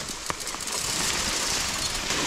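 Grass blades and leaves brushing and scraping against the gravel bike and the camera as the bike is pushed through dense overgrowth: a steady rustling with a few sharp clicks.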